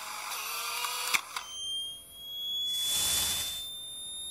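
Edited-in transition sound effects: the tail of the music fades with a short click about a second in, then thin high tones glide slowly upward under a whoosh that swells and fades in the second half.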